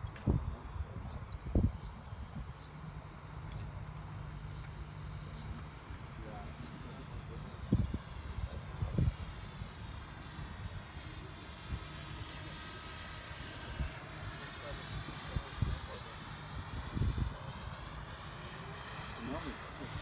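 Electric ducted fan of a radio-controlled model jet in flight: a thin high-pitched whine that slides slowly in pitch as the jet passes and rises sharply near the end. A low rumble with a few short thumps runs underneath.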